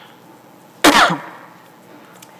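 A woman coughs once, hard and right into the microphone, about a second in. The cough comes from the thick smoke in the air around her.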